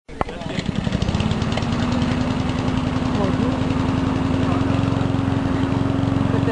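A small engine running steadily: a constant hum with fast, even pulsing.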